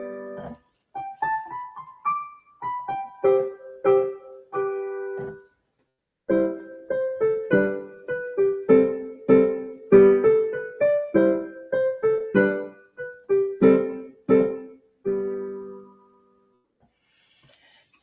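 Digital piano playing a short 18th-century-style dance piece with both hands: many short, detached notes and chords, with loud and soft passages. There is a brief pause about five and a half seconds in, and the last note dies away a couple of seconds before the end.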